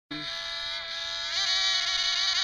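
High-pitched whine of F3D pylon-racing model aircraft two-stroke glow engines at full throttle, wavering in pitch and getting louder about 1.3 s in.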